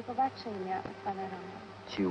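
A person's voice speaking in short phrases over a faint, steady low hum.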